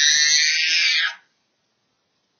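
Toddler of about 18 months screaming in a tantrum: one long, high-pitched scream that cuts off suddenly about a second in.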